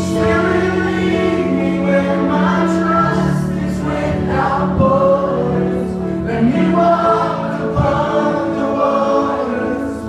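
Live worship music: a band and a congregation singing together over long held chords.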